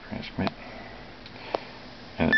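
A person sniffing briefly, with a few sharp light clicks over a steady faint hiss.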